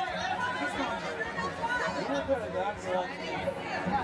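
Overlapping chatter of several people talking at once, with no single voice clearly in front.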